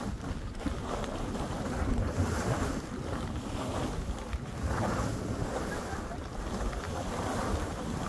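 Wind buffeting the microphone with a steady low rumble, over the hiss of skis sliding through about four inches of fresh powder, swelling and fading with each turn.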